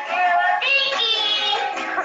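A song with singing over instrumental accompaniment, played back from a video.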